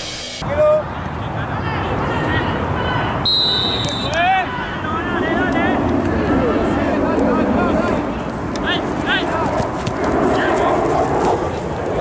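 A referee's whistle blows one short, steady blast about three seconds in, at the kickoff. Players shout and call out over a constant outdoor background murmur.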